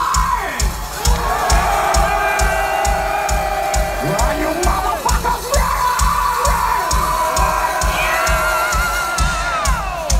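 Concert crowd cheering, whooping and holding long shouts over a steady thudding drum beat of about three beats a second.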